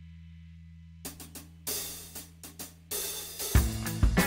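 A blues backing track in A with no bass part starts playing: drums come in about a second in with hi-hat and cymbal strikes, and the fuller band enters near the end. Before the music there is a brief low, steady electrical hum.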